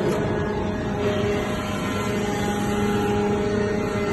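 Metal powder briquetting press running, with a steady machine hum made of several held tones. This is typical of its hydraulic power unit during a pressing cycle.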